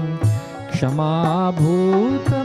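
A voice singing a Sanskrit sloka in a devotional Indian style, with ornamented, gliding melody over a steady drone and tabla strokes.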